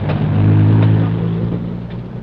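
A motor vehicle's engine in the street: a low, steady hum that swells in the first second and then fades away.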